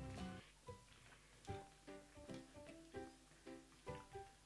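Faint background music of plucked guitar notes, about two a second.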